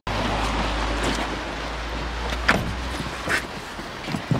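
Rustling of winter coats and two sharp clicks, about two and a half and three and a third seconds in, as children are settled into a car's back seat, over a low rumble that fades near the end.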